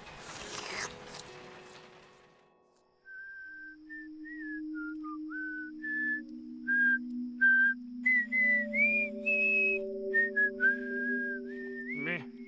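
Whistling a slow tune in short, separate notes, some sliding up or down in pitch, over low held tones. Before the whistling starts about three seconds in, a rush of noise fades away.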